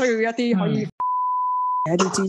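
A single steady electronic bleep tone, one even pitch, starts with a click about a second in and lasts just under a second, cutting into a woman's speech, which stops before it and resumes right after it, as a censor bleep over a word does.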